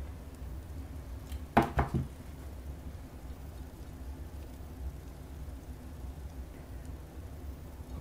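Quiet room tone with a low steady hum, broken once by a brief knock or clatter about a second and a half in.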